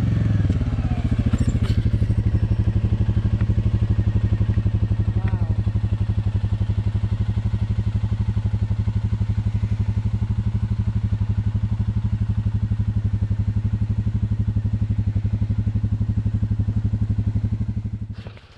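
ATV engine idling steadily, an even low putter that holds unchanged throughout.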